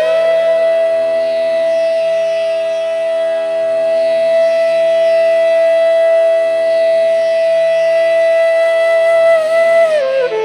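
Bansuri (bamboo transverse flute) holding one long, steady note for about nine seconds, bending down briefly near the end, over a steady drone.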